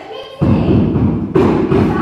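Staged fight between two actors on a wooden stage: sudden loud thuds and scuffling as one lunges at and grabs the other, in two bursts about a second apart.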